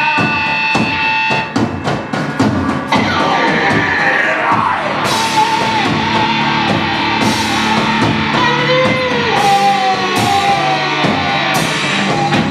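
Live hard rock band playing loud: distorted electric guitars, bass and drum kit. A long held note ends about a second and a half in, a run of drum hits follows, and then the full band comes in with bending guitar lines and cymbal crashes about every two seconds.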